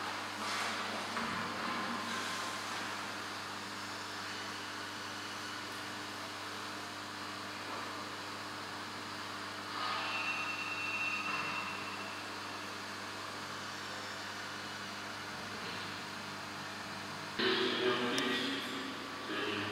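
Room tone: a steady low electrical hum under a faint hiss, with a few brief louder sounds about ten seconds in and again near the end.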